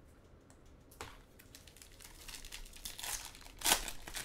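Foil wrapper of a Bowman baseball card pack crinkling as it is handled and torn open. There is a click about a second in, and the loudest rip comes near the end.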